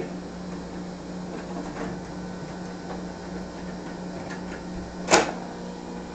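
A steady low hum with one sharp click about five seconds in.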